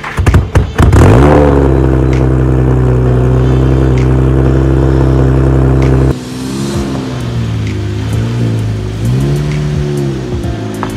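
Nissan 370Z's 3.7-litre V6 starting through an aftermarket single-tip exhaust. The starter cranks briefly and the engine catches with a rev flare about a second in. It holds a steady, raised idle, then drops abruptly about six seconds in to a lower idle that wavers slightly in pitch.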